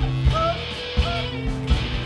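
Punk rock band playing live without vocals: distorted electric guitars, bass guitar and drums, the drums hitting regularly, with a few short rising notes over the top.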